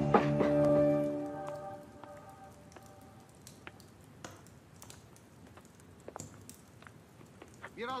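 Drama score music ending on a held chord that fades away over the first two seconds, leaving a faint stretch with scattered small clicks before a man's voice starts near the end.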